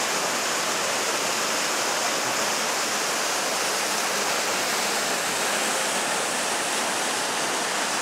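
Horcones River water rushing over granite boulders and small falls: a steady, even rush with no breaks.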